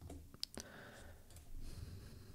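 A couple of quick computer mouse clicks close together about half a second in, over faint room noise, with a soft hiss near the end.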